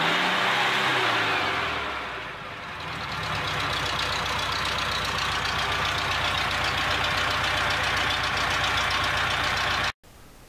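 Air-cooled flat-four engine of a VW bus. Its speed changes in the first two seconds, then it settles into a steady, even idle. This is a healthy engine that pulls evenly on all four cylinders, its vacuum needle steady at idle.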